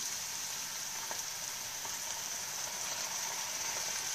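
Red onion and garlic sizzling steadily in olive oil in a frying pan as they soften, with smoked oyster mushrooms just added to the pan.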